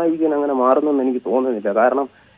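Only speech: a man talking in Malayalam over a telephone line, sounding thin and narrow.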